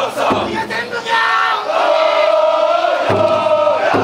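A team of festival float bearers shouting calls in unison: a few short shouts, then one long drawn-out group call held for about two seconds.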